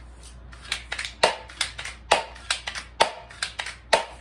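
Spring-powered BB gun being cocked by pushing its front slide and fired again and again in quick succession: a run of about a dozen sharp clacks, roughly three a second.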